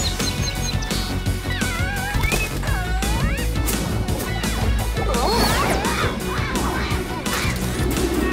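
Cartoon action music over a steady low bass, with sharp hits and sliding, whistle-like sound effects that rise and fall, in a cluster early on and again about five seconds in.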